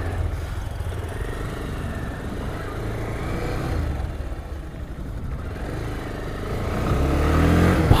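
Motorcycle engine running with a steady low rumble, getting louder over the last couple of seconds.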